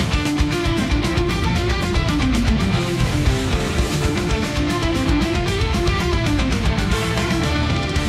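AI-generated rock song made with Suno: an instrumental passage with an electric guitar melody winding up and down over steady drums and bass.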